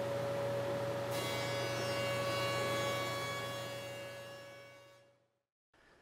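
Jointer running with a steady tone, its cutterhead cutting the edge of a walnut board from about a second in, which adds a high whine. The sound fades out about five seconds in.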